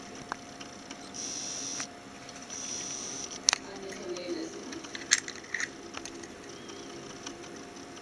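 Quiet handling noises around a 1:8 RC car's drivetrain: two short rustling hisses, then two sharp clicks a second and a half apart, with a faint steady hum underneath.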